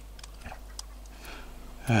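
A few faint, light clicks of metal tweezers and a tiny screw against the plastic frame of a DJI Mavic Pro drone during fiddly reassembly, over a steady low hum. A voice starts right at the end.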